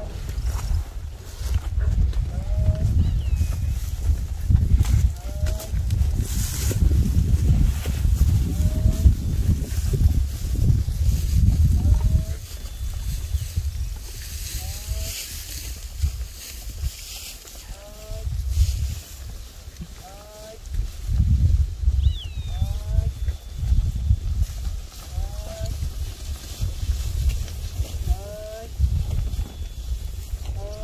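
Gusty wind buffeting the microphone in a Nelore cattle herd, with cattle mooing now and then. Short, hooked high calls repeat every second or two throughout.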